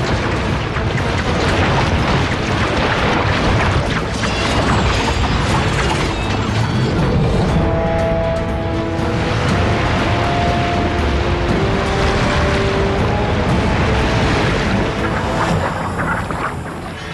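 Dramatic film score over a dense, continuous rush of sound effects with booms and crashes, from a battle scene of water and flying swords.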